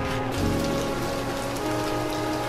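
Water boiling in a pan on the stove, a steady crackling bubble, with soft background music over it.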